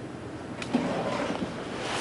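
Soft rustling of paper notes handled at a lectern, starting about half a second in and building over the next second and a half.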